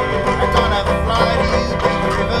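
Instrumental stretch of acoustic bluegrass-style music: banjo picking with a rack-held harmonica and a chest-worn washboard played along.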